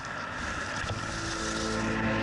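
Steady whirring hum of a camera drone's motors and propellers, with music fading in about a second in and growing louder.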